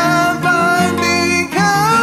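A woman singing long held notes over a guitar backing track.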